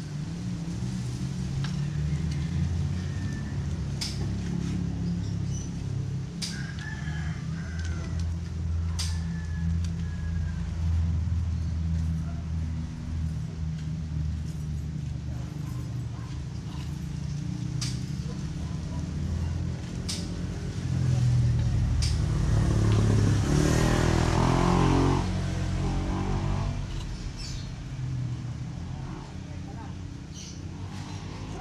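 A steady low hum runs underneath. A loud, drawn-out animal call lasts about four seconds, starting around two-thirds of the way through. Light clicks come every few seconds, from small metal parts handled on the floor.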